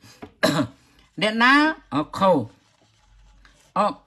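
Speech: a man talking, with a short sharp burst about half a second in.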